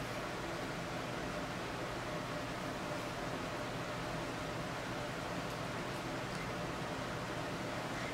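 Steady, even hiss of background noise with no distinct sounds in it.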